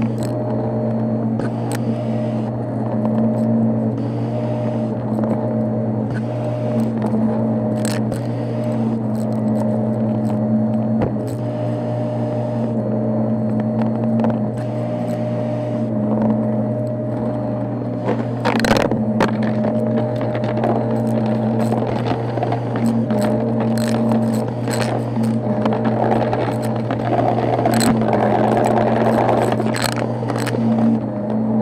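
Shark upright vacuum cleaner running over carpet: a steady motor hum and whine, with scattered ticks and crackles as bits of debris are sucked up the nozzle. A louder crunching burst comes about 18 seconds in, and the crackling thickens near the end.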